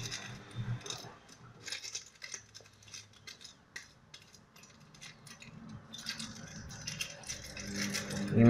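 Aluminium kitchen foil crinkling and crackling in the hands as it is pressed and smoothed over an aluminium coffee capsule, in scattered short crackles that thin out in the middle few seconds.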